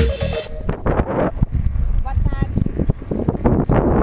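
Wind buffeting the microphone of a bike-mounted camera while riding, with a couple of brief voices. Background music stops about half a second in.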